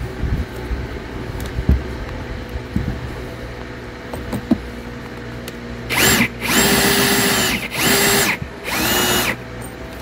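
Cordless drill driving a chair-frame bolt in four short bursts near the end, the motor whine rising and falling with each trigger pull, after a few seconds of light clicks from handling the bolt and washers. The bolt is not catching the threaded insert in the frame.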